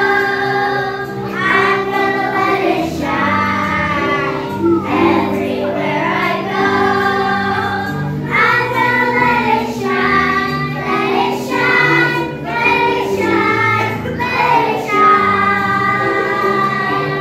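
A group of young children singing a song together in unison, over steady instrumental accompaniment.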